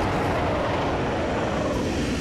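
A loud, rough monster roar sound effect for a CGI yeti, held throughout with its pitch sinking slightly.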